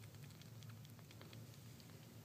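Faint, irregular little wet clicks of a young kitten suckling milk from a nursing bottle's nipple, over a low steady hum.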